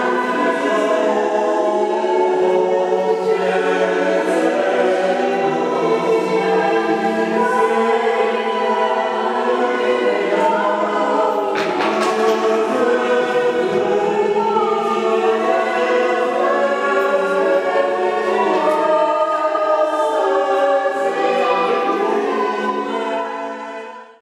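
A choir singing long, overlapping held notes in a highly reverberant stone hall, fading out near the end.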